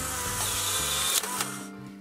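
Polaroid 636 Closeup instant camera's motor running for about a second and a half, then cutting off, as it automatically ejects the film cover after a new film pack has been loaded and the film door closed.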